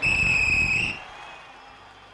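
A referee's whistle blown once: a single steady high note lasting about a second, rising slightly just before it cuts off.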